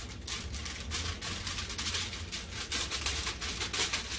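Aluminum foil crinkling in the hands as it is cut and folded, a fast, irregular crackle.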